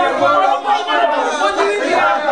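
A small group of people talking over one another in a room, their voices overlapping in a steady chatter.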